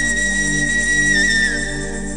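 Flute holding one long high note over sustained backing chords, the note tailing off a little before the end.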